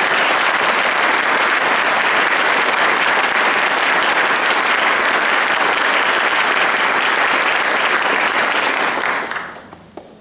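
Audience applauding loudly and steadily, dying away near the end.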